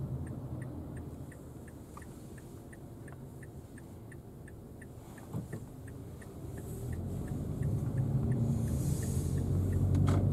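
Cabin sound of a Mazda Biante's 2.0-litre SkyActiv petrol engine and tyres: a low, quiet rumble that grows louder over the last few seconds as the car picks up speed. Through it runs a light, even ticking about three times a second, the turn-signal indicator.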